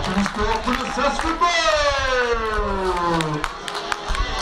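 A person's voice: a moment of speech, then one long drawn-out vocal sound falling steadily in pitch for about two seconds.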